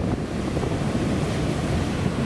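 Strong wind buffeting the microphone over the steady wash of surf breaking on the shore.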